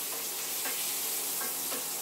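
Meatballs sizzling steadily in hot oil in a frying pan as they brown on the outside, with a spoon rolling them around and faint scrapes against the pan.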